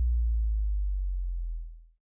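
Deep sub-bass note of an electronic dance remix left ringing on its own after the beat stops, a single steady low tone slowly fading and dying out just before the end.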